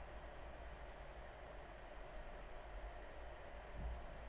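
Quiet room tone: a steady faint hiss and low hum, with a few faint clicks.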